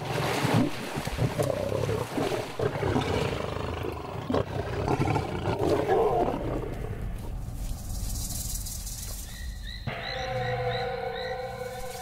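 Lions growling while they feed at a kill. About ten seconds in, background music with sustained tones comes in.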